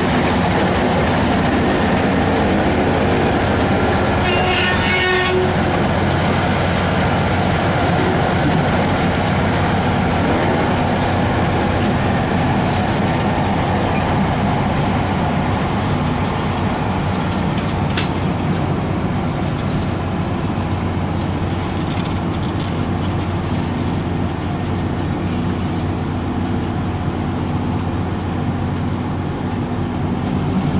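Diesel-hauled passenger train rolling slowly past: a steady low engine hum from the EMD F7A locomotive under the rumble and clatter of bi-level coaches' wheels on the rails. A brief higher pitched sound comes about four to five seconds in, and a single sharp click near the middle.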